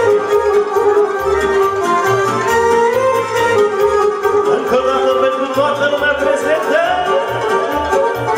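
A live band playing a Romanian folk circle-dance (hora) tune on accordion and keyboard, with a melody line over a steady bass beat.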